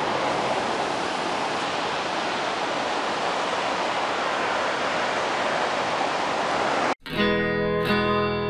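Steady, even noise of ocean surf breaking, with no other sound in it, for about seven seconds; then it cuts off suddenly and acoustic guitar music begins.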